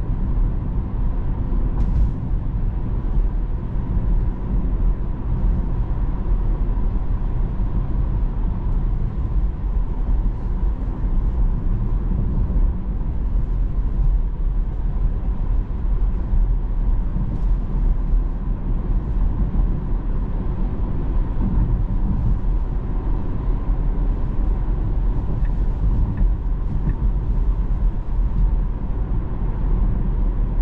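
Road and tyre noise heard inside the cabin of a Tesla electric car cruising at about 40 to 46 mph: a steady low rumble with a faint steady tone above it.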